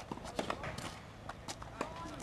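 Tennis rally on a hard court: quick footsteps of the players moving about, and sharp knocks of the ball being struck and bouncing, two of them louder than the rest.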